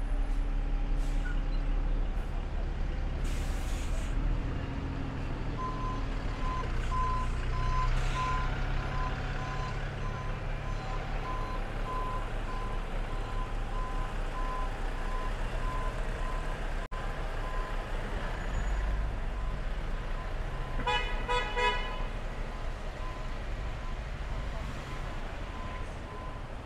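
Heavy traffic at walking pace: the engines of a double-decker bus and a large lorry run close by with a low rumble, and a short hiss comes about three seconds in. A steady pulsed electronic beep starts about six seconds in and keeps going, and a short pitched toot sounds about twenty seconds in.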